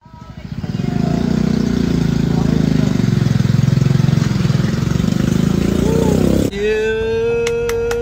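A vehicle engine running close by, with people talking over it. About six and a half seconds in it cuts off abruptly to a single steady held tone.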